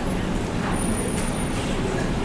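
Steady low hum and hiss of room background noise, with a faint thin high whistle for about half a second near the middle.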